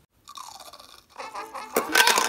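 Crunching and chewing of a bite taken out of a cookie, with music, loudest near the end.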